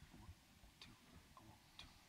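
Near silence: hall room tone with a few faint scattered ticks.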